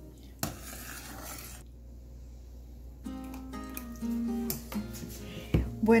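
Soft instrumental background music with held notes. There is a short scraping hiss from a metal ladle in a saucepan of thick soup about half a second in, and a single sharp knock near the end.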